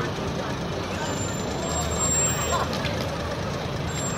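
A semi-truck pulling a flatbed parade float passes slowly, its engine rumbling steadily under the chatter of the crowd lining the street.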